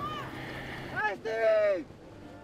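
A voice calling out once, a drawn-out shout about a second in, over steady wind and water noise.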